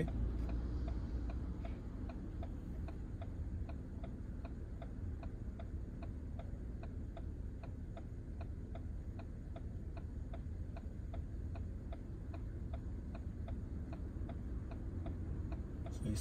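A car's turn-signal indicator ticking steadily inside a Ford's cabin, about three clicks a second, signalling a right turn while the car waits at the lights. The engine idles underneath as a low rumble.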